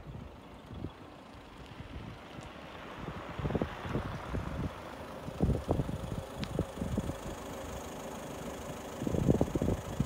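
Citroen Dispatch diesel van driving slowly up toward the microphone and stopping close by, its engine and tyres low under gusts of wind buffeting the microphone, which come strongest near the end.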